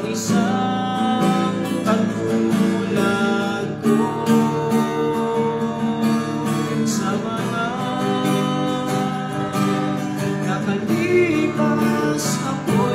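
A man singing with a steadily strummed acoustic guitar, his voice holding long notes over the strumming.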